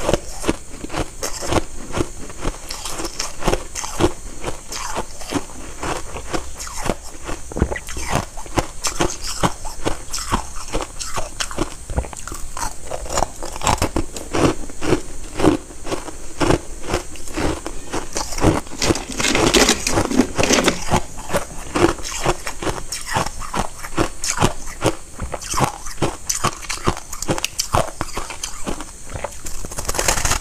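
Close-miked crunching and chewing of white shaved ice, a dense run of quick crisp crunches with no pause, loudest a little past the middle.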